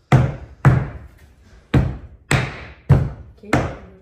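Rubber mallet striking hard six times during oak floorboard installation, each blow a sharp knock with a short fading ring, about half a second to a second apart.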